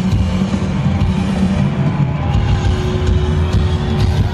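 Live rock band playing loud through a concert PA, with a dense, heavy low end from bass and guitars.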